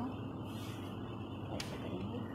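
Soft rustle of a silicone pastry brush dabbing a water mixture onto a spring roll wrapper, with a light click about a second and a half in, over a steady low hum.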